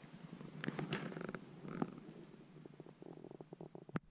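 Soft rustling close to the microphone with scattered small clicks and crackles, as of a person shifting about on moss and dry twigs. It is busier about a second in, with a quick run of small clicks near the end.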